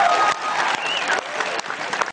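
Audience applauding: dense clapping from a seated crowd.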